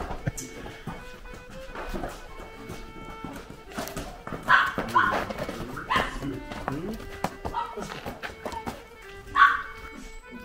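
Background music, with a dog barking in short barks: three in the middle and one more near the end.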